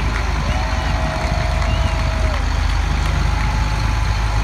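Diesel engine of a military LMTV cargo truck running at low speed as it rolls slowly past close by, with a steady, rapid low pulsing. A held, even tone sounds over it from about half a second in for about two seconds.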